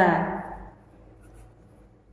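A voice trails off in the first half-second, then a marker writes a word on paper with faint scratching strokes.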